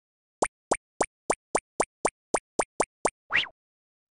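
Logo intro sound effect: a quick run of eleven short pops, about four a second, ending in one longer blip that rises in pitch.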